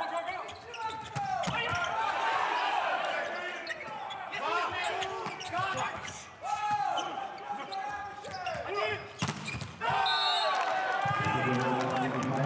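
Volleyball rally in a large, nearly empty hall: the ball being struck, shoes squeaking on the court floor and players shouting calls. About ten seconds in a short high whistle sounds, followed by players' shouts of celebration.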